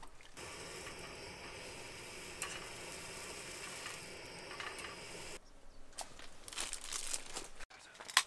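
Gas camping stove burning under a small wire grill with a slice of food toasting on it: a steady hiss that stops suddenly a little over five seconds in. After that come scattered light clicks and handling sounds.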